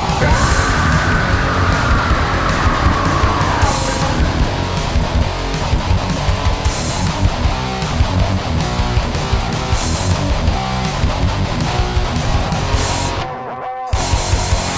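Goregrind band playing: distorted electric guitars over fast, pounding drums. The music breaks off briefly about a second before the end, then comes straight back in.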